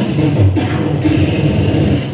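Beatboxing through a microphone and PA: a continuous vocal rhythm with deep bass sounds.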